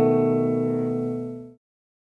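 A B7 chord strummed on an Epiphone guitar, ringing out and slowly fading, then cut off suddenly about one and a half seconds in.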